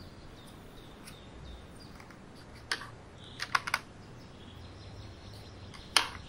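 Wooden coloured pencils clicking against one another and against their metal tin as they are picked out of a Faber-Castell Polychromos set: one click about two and a half seconds in, a quick run of three or four clicks a second later, and a sharper click at the very end.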